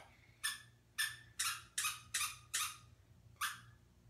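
A dog's rubber squeaky toy being squeezed in its mouth, about seven short squeaks in a row roughly half a second apart, stopping about three and a half seconds in.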